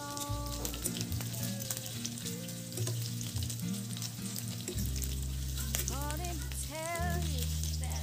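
Pork chunks sizzling as they brown in hot oil in a pan, with a few light scrapes of a spatula turning them. A background song with held bass notes and a melody line plays over the frying.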